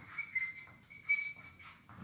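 Chalk writing on a blackboard: short scratchy strokes, several carrying a thin, high squeak.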